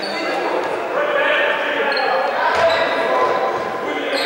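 Reverberant sports-hall sound during a youth basketball game: players' and spectators' voices echoing, a basketball bouncing on the wooden floor with one thump about two and a half seconds in, and a few short high squeaks.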